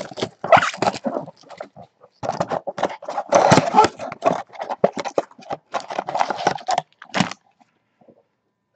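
Cardboard trading-card box being handled and opened, with the wrapped card packs pulled out and stacked: a dense, irregular run of scraping and crinkling that stops shortly before the end.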